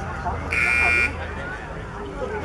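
Show-jumping arena buzzer sounding once, a steady electronic buzz lasting about half a second, the usual signal for the rider to begin the round.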